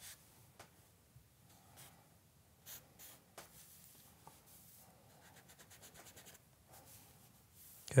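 A compressed charcoal stick scratching across drawing paper in faint short strokes, with a quicker run of strokes about two-thirds of the way through.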